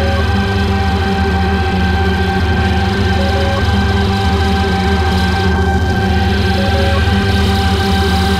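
Dark, droning soundtrack music: a dense, pulsing low drone under steady high sustained tones, with a short blip that recurs about every three and a half seconds.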